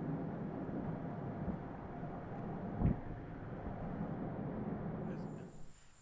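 Vehicle driving slowly along a paved road: steady engine and tyre noise, with a single bump about three seconds in. The sound fades out just before the end.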